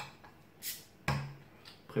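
Crown cap pried off a beer bottle with a bottle opener, with a short hiss of escaping carbonation just over half a second in.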